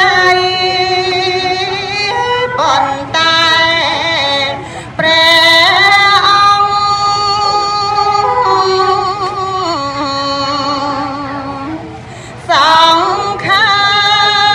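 A woman singing Khmer smot, Buddhist chanted verse, solo into a handheld microphone: long held notes that waver and slide between pitches, broken twice by short pauses for breath.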